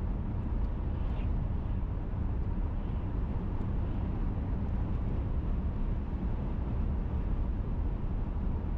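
Steady low rumble of a car driving, tyre and engine noise heard from inside the cabin.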